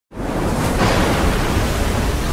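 Heavy waves and wind of a rough sea, a loud rushing noise with a deep rumble that cuts in suddenly out of silence.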